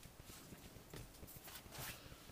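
Near silence with a few faint soft taps and rustles of hands handling sugar paste, lifting the trimmings away from a cut circle; the clearest tap comes near the end.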